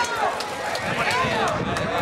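Crowd of people shouting and calling out, many voices overlapping, with a few sharp clicks mixed in.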